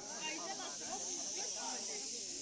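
Several people talking indistinctly in the background over a steady high-pitched hiss.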